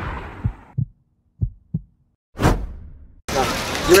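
Edited-in cinematic sound effects: the tail of a boom dies away, then two double low thumps like a heartbeat and a short whoosh. Near the end the sound cuts to outdoor ambience with voices.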